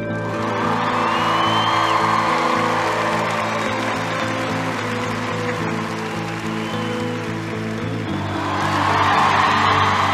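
Audience applauding and cheering over sustained background music; the applause breaks out at once and swells again near the end.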